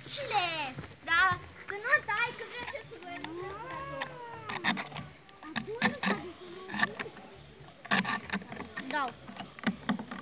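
Children's voices talking and calling, not clearly worded, including one drawn-out rising and falling call near the middle, with a few sharp clicks from handling the homemade bottle-rocket launcher in the second half.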